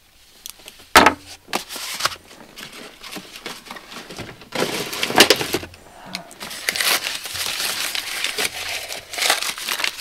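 White paper wrapping crinkling and rustling as a small wrapped item is handled and unwrapped, in irregular bursts that grow denser over the second half, with a sharp crack about a second in.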